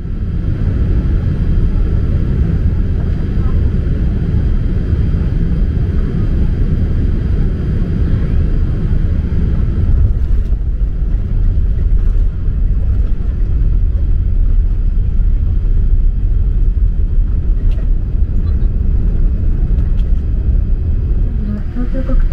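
Steady low rumble inside the cabin of a Boeing 787-8 airliner as it rolls along the runway and taxiways after landing, with engine noise and wheel rumble mixed together.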